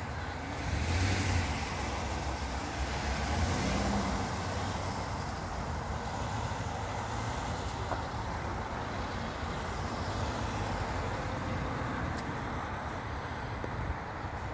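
Road traffic passing: cars driving by with a steady rush of tyre and engine noise, swelling about a second in and again around three to four seconds.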